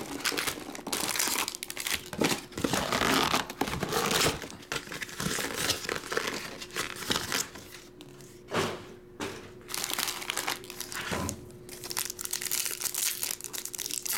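Foil wrappers of 2022 Topps Series 1 jumbo card packs crinkling and rustling as the packs are handled and stacked by hand, with a couple of soft knocks as they are set down and squared up.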